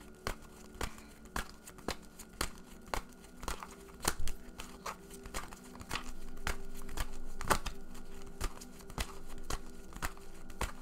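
A tarot deck being shuffled by hand close to a microphone: an irregular run of card-stock snaps and flicks, with a faint steady hum underneath.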